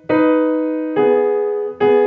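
C. Bechstein grand piano: three slow double notes (two-note chords) struck in the right hand about a second apart, each left to ring on and fade. They are played with arm weight from the shoulder as a double-note practice exercise.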